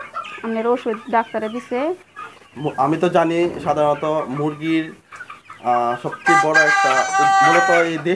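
Young Sonali chickens clucking and calling in a series of short calls, with one long drawn-out call near the end.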